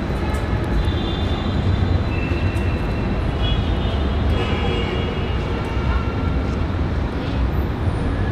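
Alexandria Ramleh-line tram at a platform, with a steady low rumble of the tram and street traffic. Thin high whining tones come and go during the first half.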